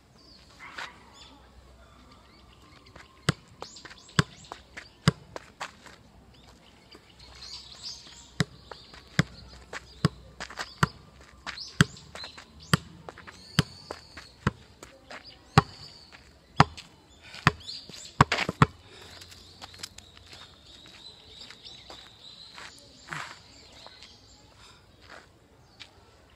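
Football being juggled on the outside of the left foot: a steady series of sharp thuds of foot on ball, about one a second, starting about three seconds in and stopping a few seconds past the middle. Birds chirp faintly throughout.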